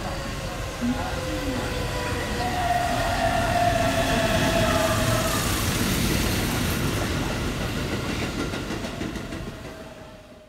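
A vehicle running: a steady rumble with a sustained whine for a few seconds in the middle, fading out near the end.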